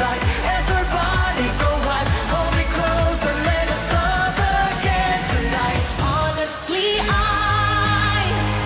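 Upbeat pop song with a female-fronted lead vocal over a steady kick-drum beat. Near the end it breaks off and cuts to a slower song with long held sung notes.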